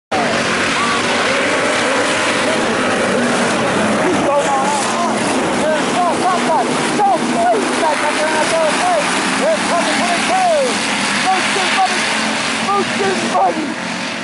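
A pack of IMCA Hobby Stock race cars running hard around a dirt oval, their engines making a dense, steady roar.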